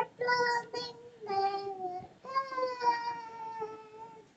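A young girl singing unaccompanied: two short held notes, then a long note that falls slowly in pitch and fades near the end.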